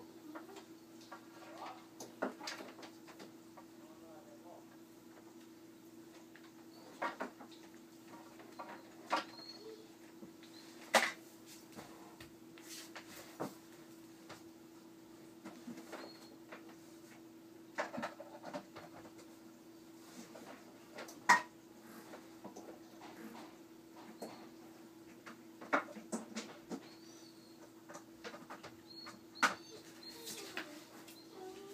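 Scattered clicks and knocks from LED flood lights and their hardware being handled and fitted onto an aluminium light bar, the sharpest about eleven and twenty-one seconds in, over a steady low hum.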